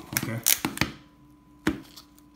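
Hard plastic card holders knocking on a desktop as they are handled and set down: three sharp clacks in quick succession, then one more about a second later.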